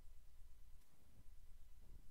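Very quiet room tone: a faint, steady low hum with no speech or music.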